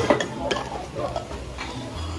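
A few light clinks and knocks of dishes and glassware being handled, spaced out at irregular intervals.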